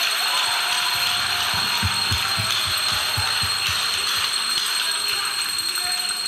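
An audience applauding in a hall, a steady clatter of many hands, with a run of low thumps at about three a second through the middle.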